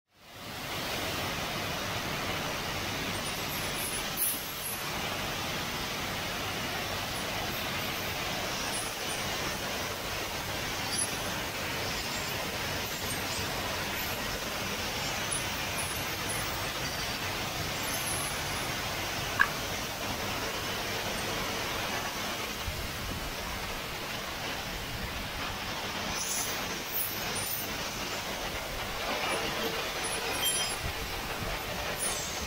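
Gas burner flames hissing steadily as they heat glass rods, with a few short clicks.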